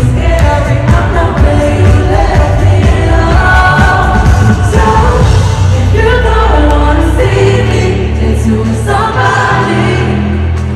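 Live pop concert music: a singer over a bass-heavy backing track, amplified through an arena sound system.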